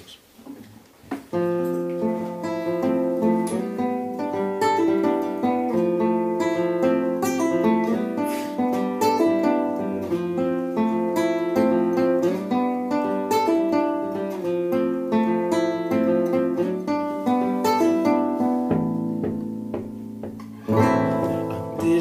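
Nylon-string classical guitar picked in a song's instrumental intro, starting about a second in. Near the end a low held note joins and the playing grows louder.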